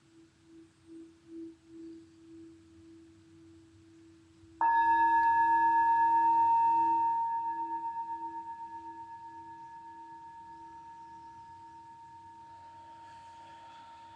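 Brass singing bowl held on the palm, first rubbed around the rim with a mallet so that a low wavering hum swells and fades. About four and a half seconds in, the bowl is struck and rings out loudly with several tones, then fades slowly with a pulsing wobble.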